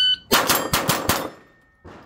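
A shot timer's start beep ends, and a .22 rimfire rifle fires a fast string of about five or six shots in under a second.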